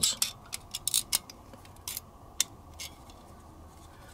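Small sharp clicks and scraping ticks of a CZ 75 pistol magazine's base plate being worked onto the rails of the magazine body. A quick run of clicks comes in the first second or so, then a few single ticks spaced out after.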